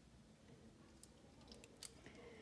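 Near silence: room tone with two faint clicks, about a second in and near the end.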